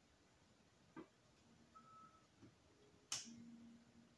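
Near silence with a few faint clicks. The sharpest and loudest comes about three seconds in and is followed by a faint low hum.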